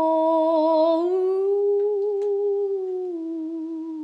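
A woman's unaccompanied voice holding one long note that thins into a hum about a second in. The pitch rises a little, settles back, and the note fades out near the end.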